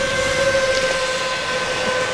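Seven-inch FPV quadcopter flying overhead, its motors and tri-blade propellers making a steady whine with a few higher overtones. The pitch eases slightly lower as it passes.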